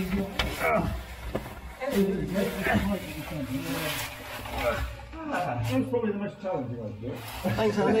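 Indistinct men's voices, mumbled talk and effortful sounds, with scraping and rubbing of caving suits against rock as a caver squeezes through a narrow passage.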